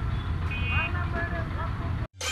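Faint people's voices over a steady low rumble.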